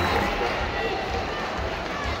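Crowd noise in a packed arena: a steady din of many voices that slowly eases off.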